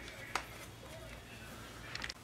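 Quiet handling of a plastic glue bottle over paper, with one light click about a third of a second in.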